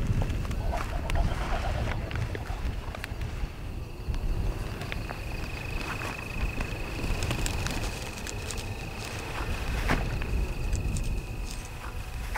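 Low wind rumble on the microphone with scattered small clicks and rustles. A steady high thin tone sets in about five seconds in and holds.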